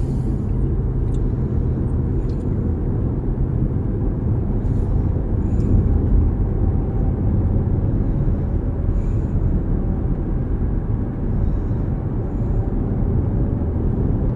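Steady low road rumble of a car driving at highway speed, heard from inside the cabin: tyre, engine and wind noise at an even level.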